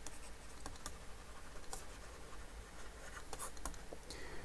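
Faint scratching and light ticks of a stylus on a tablet as words are handwritten, with a cluster of taps near the end.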